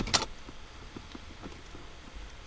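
Small metallic tool-handling noises: a sharp click right at the start, then faint scattered clicks and knocks as an Allen key is lifted off the shifter's bracket screw.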